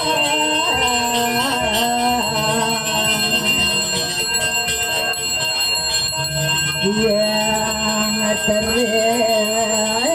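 A Balinese priest's hand bell (genta) rung continuously, giving a steady high ringing, over slow, wavering devotional chanting by a group of voices.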